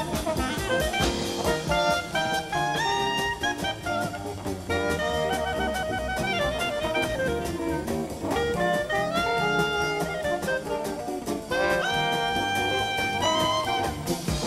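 Traditional jazz band playing live. A clarinet carries the melody over double bass, guitar and a drum kit keeping a steady beat.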